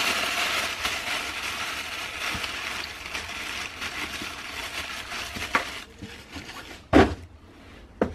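Black plastic bag rustling and crinkling as it is folded and wrapped around a nail drill, fading out over about six seconds; then a single thump about seven seconds in.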